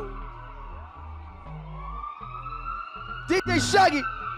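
Electronic dance music played through a DJ's sound system: a held high synth tone over stepping bass notes, with repeated rising-and-falling siren-like sweeps. A loud burst of sweeps comes near the end.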